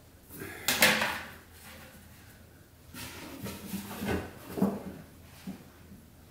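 Wooden beehive parts being handled: one loud wooden scrape and knock about a second in, then a run of smaller knocks and bumps as the Flow Hive super with its roof is picked up.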